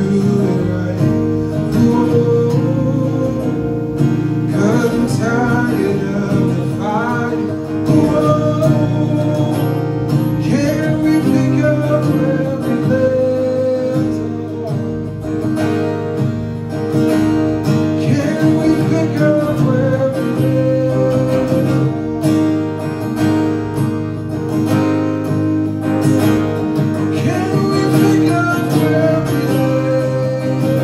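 Acoustic guitar strummed steadily under a man's solo singing voice that comes and goes in long melodic phrases.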